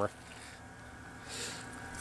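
Faint steady background hiss in a pause between sentences, with a soft swell of hiss about one and a half seconds in.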